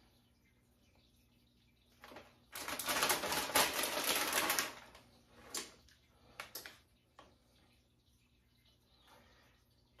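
Plastic shredded-cheese bag crinkling and rustling for about two seconds as a hand works in it, followed by a few short crinkles.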